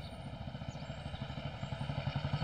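A faint, low, steady engine rumble with a fast flutter, like a vehicle engine running at a distance.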